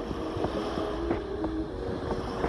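Wind buffeting an outdoor microphone, a loud, rough low rumble and hiss, with faint steady music tones underneath.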